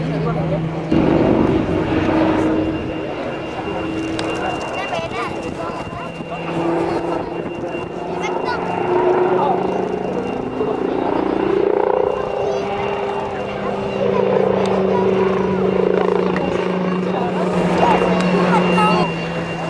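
Eurocopter X3 hybrid helicopter in flight: its main rotor, two wing-mounted propellers and turbine engines make a steady droning hum whose pitch shifts as it manoeuvres, rising a little past the middle and then easing down.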